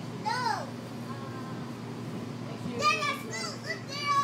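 High-pitched children's voices calling out in short bursts, the loudest about half a second in and again near three seconds, over the steady low hum of a moving light rail car.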